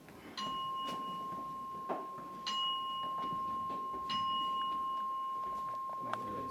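A Buddhist bowl bell struck three times, about two seconds apart, each stroke ringing on and overlapping the last, to mark the bows. A soft knock sounds between the first two strokes.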